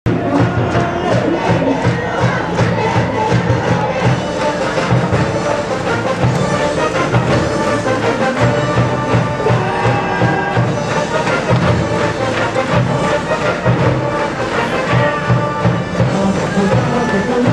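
Baseball cheering-section music from the stands: instruments playing over a steady drum beat, with crowd cheering.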